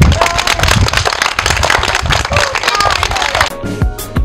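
A group of children clapping, with a few shouts among the applause. About three and a half seconds in the clapping stops and a news jingle with electronic tones begins.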